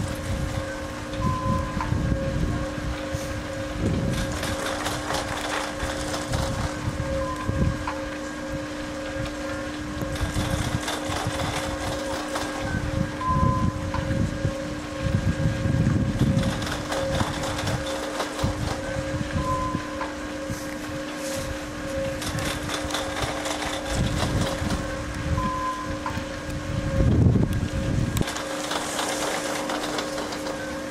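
Wind gusting on the microphone in uneven rumbling bursts, the strongest near the end. Beneath it runs a steady low hum, with a short higher tone repeating about every six seconds.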